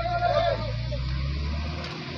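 A vehicle engine running with a steady low hum that drops away near the end, under a faint voice.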